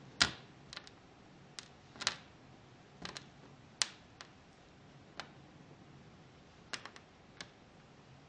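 Clumps of gold Kinetic Rock, small pebbles held together by a sticky binder, dropping and crumbling onto a tabletop: a dozen or so small, irregular clicks as pieces land.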